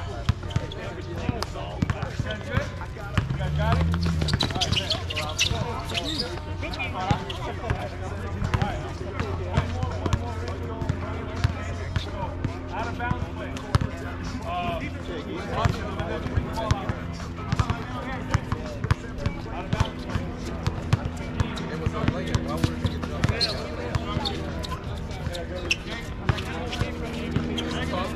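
Basketballs bouncing on an outdoor hard court: a busy, irregular patter of dribbles and bounces from several balls at once.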